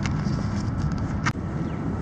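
Steady low rumble of outdoor background noise, with a faint click a little past the middle.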